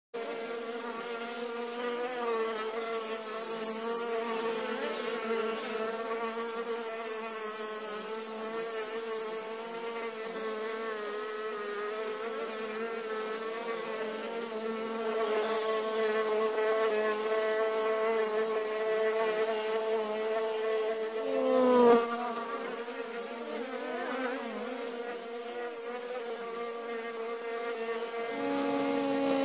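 Steady buzz of a hovering insect's wings: one pitch with overtones, wavering slightly. About three-quarters of the way through, the buzz swells and its pitch dips briefly.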